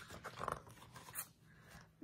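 Pages of a picture book being turned and handled: a few soft paper rustles and brushes, dying away after about a second and a half.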